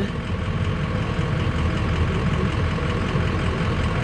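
Ford 6.0-litre Power Stroke turbo-diesel V8 idling steadily.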